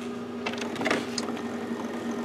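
HP Officejet Pro 8600 inkjet printer running with a steady hum and a few faint clicks.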